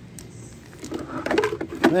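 A man's voice speaking, starting about a second in, over a faint steady low hum.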